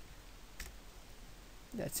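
A single faint click on the computer's mouse or keyboard about half a second in, as the drawing is saved. A man starts to speak near the end.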